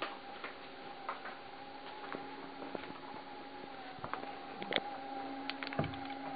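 Scattered light clicks and knocks of studio gear being handled over a steady faint electrical tone, with a few sharper ticks near the end.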